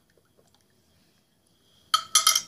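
A few faint small clicks, then near the end a sharp clink with a ringing tone: a utensil striking a container as cola syrup is mixed.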